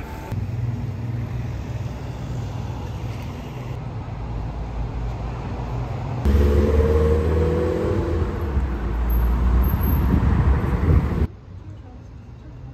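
Street traffic: an articulated city bus's engine runs steadily as it passes, then a louder, heavier rumble of traffic. Near the end the sound drops abruptly to quieter street ambience.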